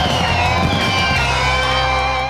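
Cartoon closing music with held notes and a few slowly falling, whistling tones.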